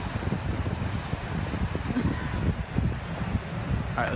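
Wind buffeting the microphone as an irregular low rumble, over a steady wash of surf.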